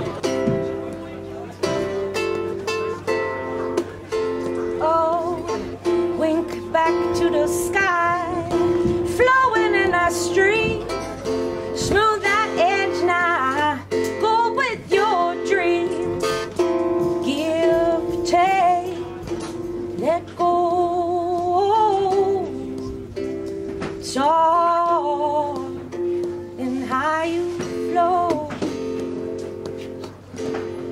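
Acoustic blues played on a plucked string instrument, with gliding, bending melody notes over a steady held low drone.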